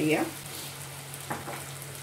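Chickpea curry sizzling softly in a stainless steel saucepan as liquid is poured in from a cup, over a steady low hum, with one light knock about a second and a half in.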